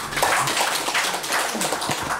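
A small group of people clapping, many handclaps overlapping in a steady round of applause.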